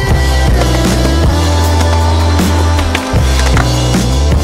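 Backing music with a steady deep bass line. Under it, a skateboard's wheels roll on concrete, with a few short clacks of the board.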